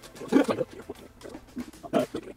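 A man laughing in loud bursts, the strongest about half a second in and another near the end.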